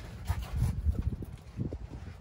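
Handling and movement noise: irregular low bumps and rustling as the handheld camera is shifted about under the van.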